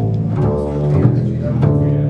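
Several double basses played pizzicato together, plucked notes struck about twice a second and each ringing on into the next. They cross between the D and G strings with the D as pivot string, in a slow, even string-crossing exercise.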